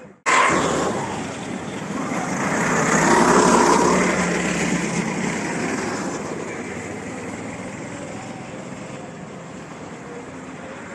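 Go-kart engines running on the track: one passes close just after the start with its pitch falling as it goes by, another swells up about three seconds in and then fades slowly away.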